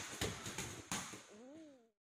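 Kicks and punches landing on Muay Thai pads: three sharp impacts about a third of a second apart. A short pitched sound that rises then falls follows near the end, and the sound then cuts off.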